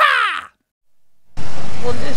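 A short pitched intro sting that rises and then falls, cut off about half a second in. After a brief silence, a loud steady rumbling noise starts about 1.4 s in, like a ride vehicle moving outdoors.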